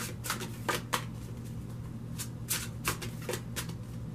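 A deck of large tarot cards being shuffled by hand: an irregular run of soft card slaps and flicks, several a second.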